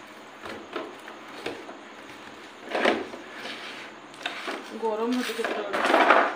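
Eating by hand from steel bowls: a few faint clicks and scrapes of fingers against the metal, one short louder noisy sound about three seconds in, then a person's voice near the end.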